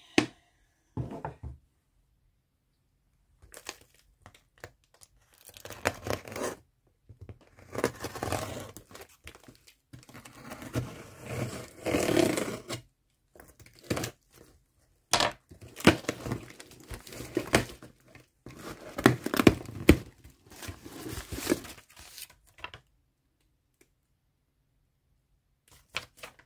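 Clear packing tape being ripped off a cardboard shipping box and the box flaps pulled open, in several rasping stretches with short pauses, with crinkling of the packing and a few sharp knocks.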